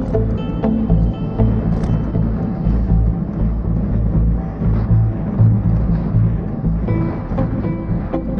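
Background music with a pulsing low beat and sustained pitched notes.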